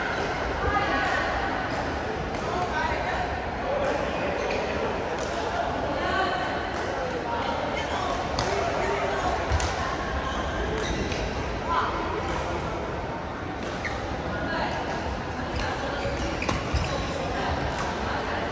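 Badminton rackets hitting a shuttlecock during a doubles rally: sharp, short pings at uneven intervals, echoing in a large sports hall, over the chatter of many voices.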